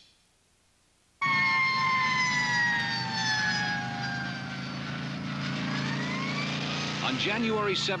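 Police motorcycle siren wailing over the motorcycle's engine running. The siren starts suddenly about a second in, its pitch slowly falling for several seconds and then rising again.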